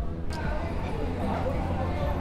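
Indistinct chatter of people, with no clear words, over a steady low hum; it comes in suddenly about a third of a second in.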